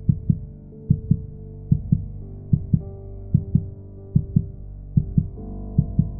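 Dark background music: a sustained low drone whose notes shift a few times, under a heartbeat-like double thump that repeats about every 0.8 seconds.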